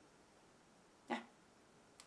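Near silence: room tone, broken about a second in by one short spoken word, "ja".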